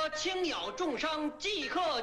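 A man's voice calling out in a drawn-out, sing-song street cry, its pitch sliding up and down between held notes: an itinerant doctor hawking cures.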